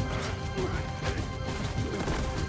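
Film battle soundtrack: sharp hits and crashes of combat, about one a second, over a dramatic orchestral score with steady held notes, with brief shouts mixed in.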